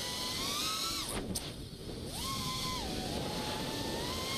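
Miniquad FPV racing quadcopter's brushless motors whining, the pitch following the throttle. The whine falls away about a second in as the throttle is cut for the drop, jumps back up about two seconds in on the catch, eases down as the throttle is backed off, then climbs slowly again.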